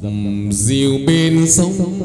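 Hát văn (chầu văn) ritual music for a hầu đồng spirit-possession ceremony: a melody with a wavering vibrato over ensemble accompaniment, with high percussion strikes about once a second.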